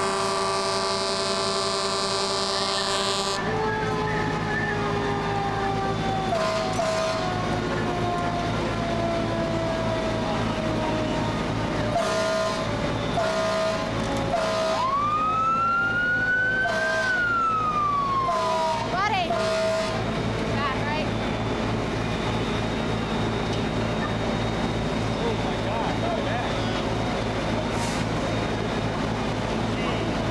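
Fire apparatus sirens at a working structure fire, over the steady rumble of idling engines and pumps. A steady horn-like tone cuts off about three seconds in. A siren then winds slowly down in pitch over many seconds, and around the middle a second siren tone rises and falls, along with a run of short repeated beeps.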